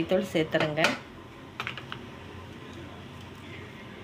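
A woman's voice for about the first second, then a few light clicks about one and a half seconds in, over a faint steady background.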